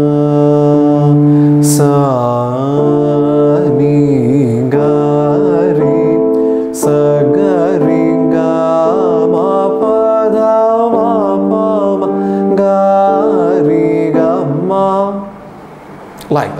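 Male Carnatic vocalist singing the Pallavi of a swarajathi in raga Ananda Bhairavi, with sliding, oscillating gamakas on held notes, over a steady drone. The phrase ends about a second before the close, leaving the drone quieter.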